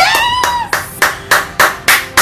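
A woman's short, rising, excited squeal, then hands clapping quickly and evenly, about three claps a second, five claps in all.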